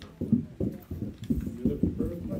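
Muffled speech from a person some way from the microphone, the words indistinct and the voice dull with little of its higher tones.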